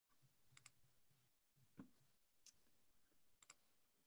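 Near silence: faint room tone with a few soft clicks, two of them in quick pairs.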